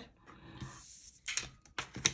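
Playing cards handled on a tabletop: a faint soft rustle as a card is drawn from the deck, then a few light clicks and taps as it is set down.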